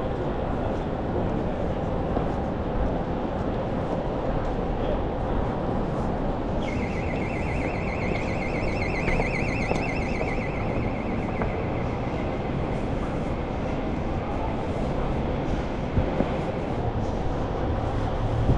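Steady city street noise, with a high, fast electronic beeping that starts about seven seconds in and stops some six seconds later.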